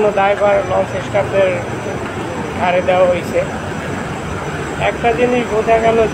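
Voices talking in short stretches over a steady low mechanical drone.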